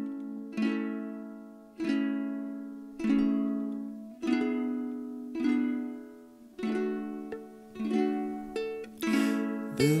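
Solo strummed acoustic string instrument opening a song: slow chords, about one every second, each left to ring out and fade. In the second half the strums come quicker, and the voice starts near the end.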